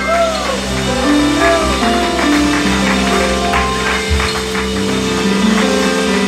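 Live worship band playing: keyboard chords held over drums and cymbal hits, with a voice sliding up and down in the first second or so.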